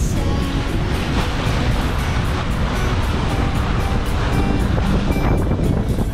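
Wind buffeting the microphone and water rushing past the hull of a sailing yacht under way, a steady loud rush with music faintly underneath.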